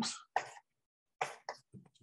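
A person coughing and clearing the throat in short bursts, one about half a second in and more just past one second, between two spoken words.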